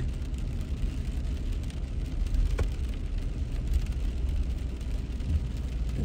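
Inside a moving car on a wet road: steady low rumble of the engine and tyres on wet pavement, with one brief faint click about two and a half seconds in.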